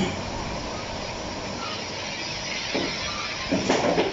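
Steady background hiss of a noisy recording, with two brief faint sounds near the end.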